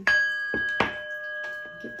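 A small bell struck and left to ring, with a clear, steady tone that rings on and slowly fades. It is struck again lightly just under a second in.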